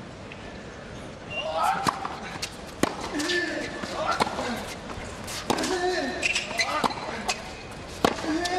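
Tennis rally on a hard court: a ball struck back and forth by rackets, sharp hits about a second apart starting a second or so in, with short voice sounds after several of the shots over a steady crowd background.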